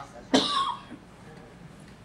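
A single short, loud cough about a third of a second in.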